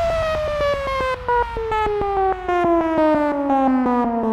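Synthesizer tone in an electronic dance track, falling slowly and steadily in pitch and chopped into fast, even pulses: a downward sweep effect at a breakdown or transition.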